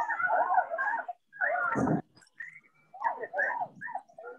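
Dog whining and yipping in three short stretches, heard through a video call's audio, most likely from a participant's microphone left on.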